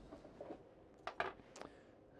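A few faint, short clicks and rustles: bonsai scissors and hands moving among juniper foliage.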